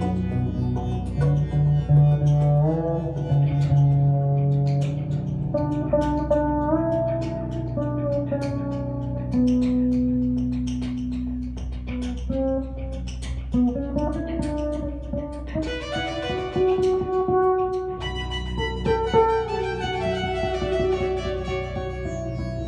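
Electric bass guitar played solo in a slow melodic line, notes sliding into one another over long held low notes.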